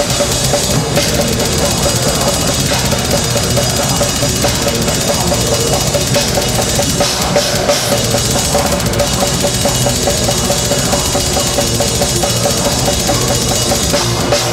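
Death metal band playing live: a drum kit played fast under a constant wash of cymbals, with guitars and bass.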